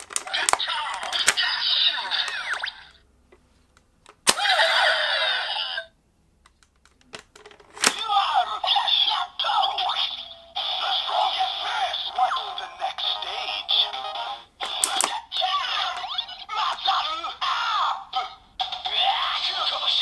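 Kamen Rider Ex-Aid Buggle Driver toy belt playing its electronic sound effects, with a sharp click of its parts a few seconds in. From about eight seconds it plays looping standby music with short synthesized voice calls.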